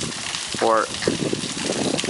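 Steady rush of flowing river water, an even hiss that runs under a single spoken word.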